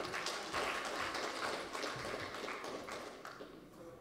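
Audience applauding, a dense patter of many hands clapping that fades away near the end.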